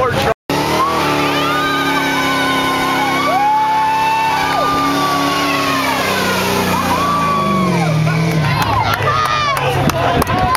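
A car doing a burnout: its engine is held at high revs while the tyres squeal, and the revs fall away about three-quarters of the way through.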